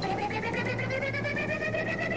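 An electronic interlude jingle between jokes: a wavering tone that glides slowly down and then back up, over a quick, steady pulse.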